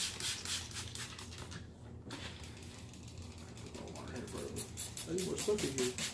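Hand trigger spray bottle squirted rapidly onto a fabric armrest: a quick string of short hissing sprays, about five a second. They break off about two seconds in and come back more faintly later. A man's voice is heard briefly near the end.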